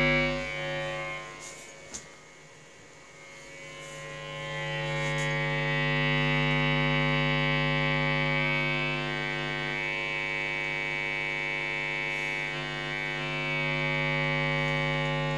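Mains hum from a tube amp's 250 W toroidal power transformer, picked up by a guitar's humbucker pickup and played through the amp: a steady buzz with many overtones. It drops low with a click about two seconds in, swells back up over the next few seconds and then holds steady.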